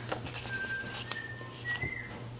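Faint whistling: three steady notes, each held about half a second, stepping up in pitch. Light taps and rustles of a paper sticker sheet being handled.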